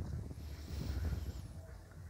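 Quiet outdoor ambience: a low wind rumble on the microphone, with a few faint high-pitched bird chirps in the first half.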